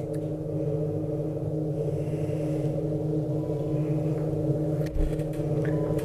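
A steady low hum with several pitches held at once runs throughout. Over it come a few faint clicks of scissors cutting nylon crinoline mesh: one at the start and a pair about five seconds in.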